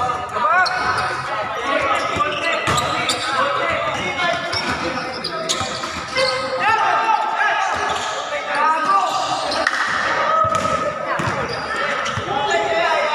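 Basketball being dribbled and bounced on a hard court under a large roof, with a few sharp knocks, while players call out to each other over the play; the sound echoes in the hall.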